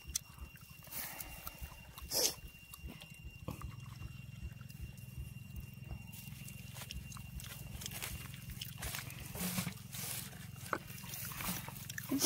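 Low steady rumble with scattered clicks and rustles of hands handling dry grass stems, and a faint steady high tone through the first half.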